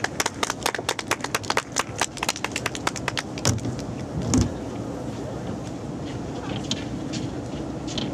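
Scattered hand-clapping from a small audience: quick, uneven claps for the first three seconds or so that then thin out to a few faint claps over a steady background noise, with a low thump about four seconds in.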